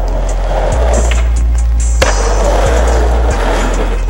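Skateboard wheels rolling on pavement in two runs, with one sharp clack of the board about halfway through, under loud music with a steady bass line.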